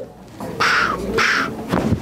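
Two short, breathy exhalations about half a second apart, then a brief low thump near the end, as a side-posture lower-back chiropractic adjustment is delivered.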